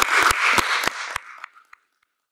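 Audience applauding, a dense patter of hand claps. It fades out and stops about a second and a half in.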